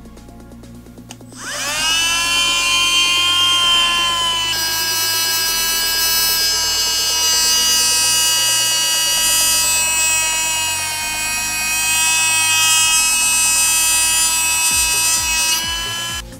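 Cordless 8 V mini rotary tool spinning up about a second in, its pitch rising, then holding a steady high whine while a 1000-grit sanding disc polishes a steel wrench.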